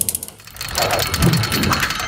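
Logo-animation sound effect: a fast run of clicks, like a ratchet, over a low rumble that swells twice.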